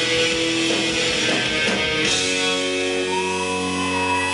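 Live rock band with electric guitars, keyboard and drums playing an instrumental passage. Strummed chords with drums fill the first half, then a chord is held and rings out steadily from about halfway.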